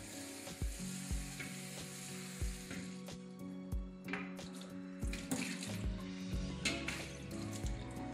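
Tap water running into a metal round cake tin for the first few seconds, then sloshing as it is swirled around the tin and poured out into a stainless steel sink.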